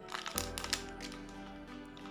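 Background music with steady held notes, over a few short crackles of a clear plastic zip-lock bag being handled.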